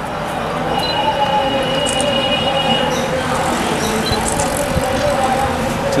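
A group of people singing together in unison, holding long notes, most likely the national anthem sung during a flag salute.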